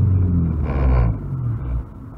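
Low rumble of a car's engine and road noise picked up by a dash cam inside the cabin, the engine note rising as the car speeds up. A brief rush of hiss comes about a second in, and the level drops near the end.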